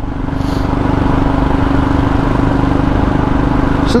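Royal Enfield Himalayan's single-cylinder engine running at a steady cruise while riding, a steady hum that builds slightly in the first second, under wind and road rush.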